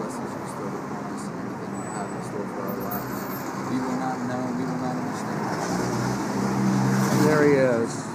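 Street traffic noise, with a motor vehicle passing on the road that grows louder toward the end, under low, indistinct voices.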